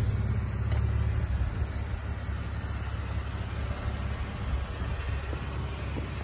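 A 2013 Jeep Wrangler's 3.6-litre V6 idling: a steady low hum.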